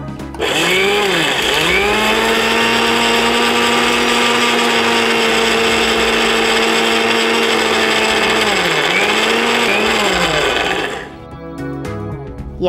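Electric mixer grinder (mixie) with a steel jar running at full speed as it grinds a coarse paste. It starts about half a second in and dips in speed and picks up again twice at the start and twice near the end, as if pulsed. It stops shortly before the end.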